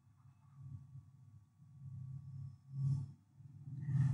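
Quiet room tone: a faint steady low hum, with a soft short sound about three seconds in.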